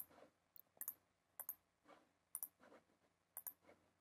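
Faint computer mouse clicks: about half a dozen sharp ticks, most in close pairs, coming at irregular intervals.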